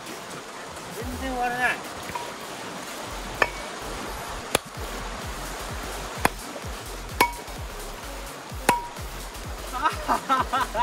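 Five sharp clinks of a long-handled rock hammer striking creek stones, spaced unevenly, several with a short metallic ring: rocks being split open to look for fossils. Under them runs a swift stream, and background music with singing plays throughout.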